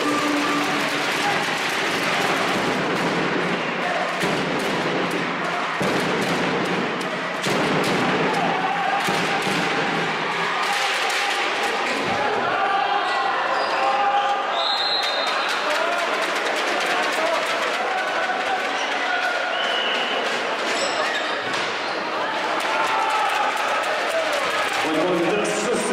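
Handball bouncing and slapping on a wooden sports-hall floor as players dribble and pass, over the steady noise and shouting of the crowd in the hall.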